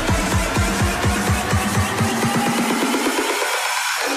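Electronic dance music with a fast, steady kick-drum beat. In the last second and a half the bass and beat fall away in a rising sweep, leaving only the upper parts of the music.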